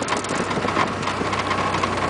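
Ariel Atom's engine running steadily, heard from inside its open cockpit, with a constant low hum and a steady higher whine over the drone.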